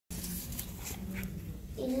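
Indistinct background noise of a large hall with a faint low hum and a few faint clicks, then a girl starts speaking into a microphone near the end.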